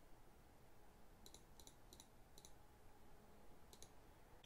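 Faint computer mouse clicks over near-silent room tone: four clicks about a third to half a second apart in the middle, then one more near the end. These are the clicks of stepping a date-picker calendar forward month by month and picking a day.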